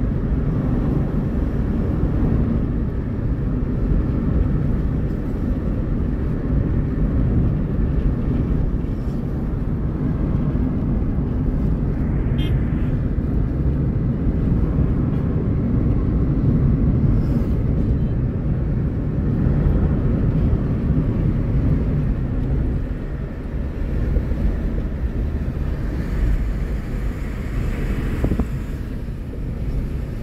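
Steady low rumble of road and engine noise heard from inside a moving car with the windows up.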